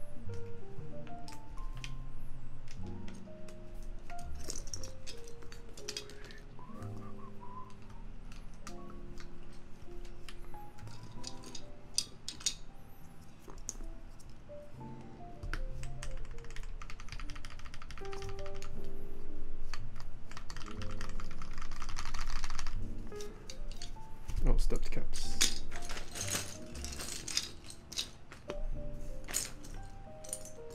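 Keycaps being pressed onto the Black Gateron Ink linear switches of a brass-plate TGR Alice mechanical keyboard, and the keys pressed down in short clacks, with a fast run of key presses about three quarters of the way through. Background music plays throughout.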